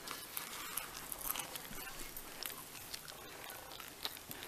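Faint rustling of blankets and camera handling noise, with scattered small clicks and taps.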